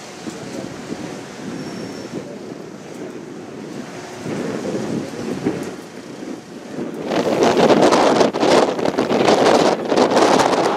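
Wind buffeting the microphone on a ferry's open deck over a steady rush of wind and sea. About seven seconds in the wind turns much louder and rougher, in ragged gusts.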